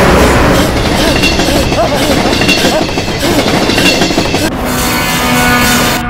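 A train running fast along the rails, a loud, dense rush of rail noise with voices mixed in. About four and a half seconds in the noise drops back to a steadier, quieter sound.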